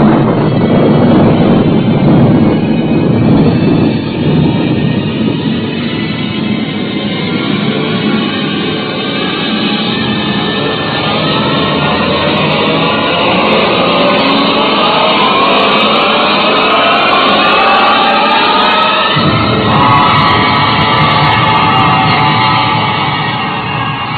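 Rocket blast-off sound effect from a 1950s radio drama: a loud roar that starts abruptly, with the show's theme music rising through it. Gliding tones grow clearer in the second half, and the deep part of the roar drops away near the end, leaving mostly music.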